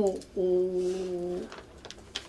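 A man's drawn-out hesitation hum held at one steady pitch for about a second, a filler sound in the middle of a spoken answer.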